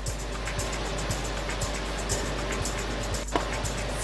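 Lottery ball machine mixing its balls, a steady rushing noise, under background music with a beat of about two a second.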